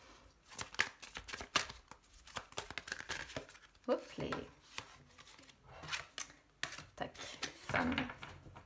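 Oracle cards handled in the hands and laid on a table: the deck is shuffled and sorted, and cards are slid out and set down. This gives many short, crisp card clicks and snaps at an uneven pace.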